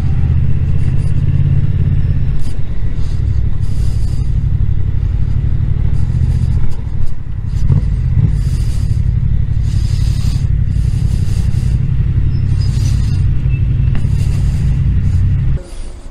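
Motorcycle engine running at low speed, heard from the rider's seat. The sound drops away abruptly just before the end as the bike stops and the engine is switched off.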